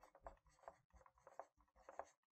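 Dry-erase marker writing on a whiteboard: a quick run of short, faint strokes as letters are written.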